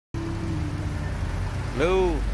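Honda Brio's 1.2-litre i-VTEC four-cylinder engine idling steadily with the bonnet open, starting abruptly just after the start. A short rising-then-falling vocal sound comes near the end.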